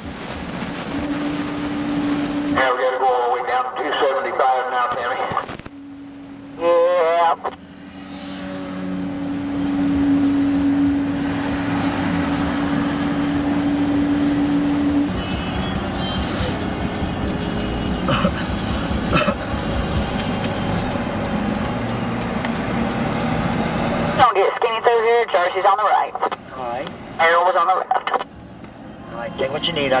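Steady road noise inside a moving car, with a steady hum. Several short stretches of a wavering voice-like or music-like sound cut in, about three seconds in, around seven seconds, and again near the end.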